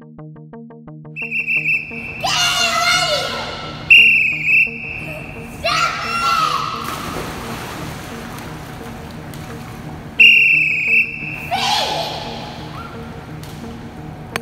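A swimming official's whistle gives backstroke start commands: a quick run of short blasts (get ready), a long blast about four seconds in (step into the water), and a second long blast about ten seconds in (feet on the wall). Splashing and children's voices echo around the pool hall between the blasts.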